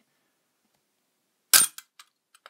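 Dead silence, then about one and a half seconds in a single sharp, loud knock with a faint click just after it.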